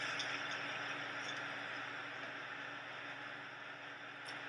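Steady background hiss with a faint low hum, easing off slightly; no distinct event stands out.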